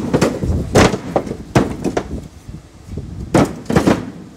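Bricks being thrown one after another onto a pile of bricks in a tipper van's bed: a run of sharp clacks and knocks of brick on brick, with a short lull a little past the middle.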